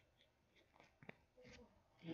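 Near silence: room tone with a few faint clicks, one sharper about a second in.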